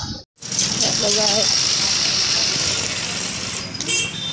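Steady engine and road noise heard from inside a moving vehicle, with a brief voice about a second in. The sound drops out for a moment just after the start.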